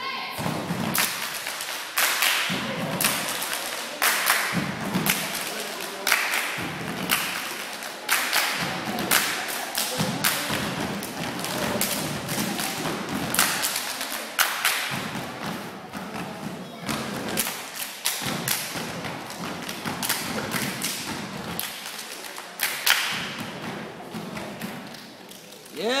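Step team stepping: a fast, uneven run of sharp foot stomps and hand claps or body slaps in rhythm.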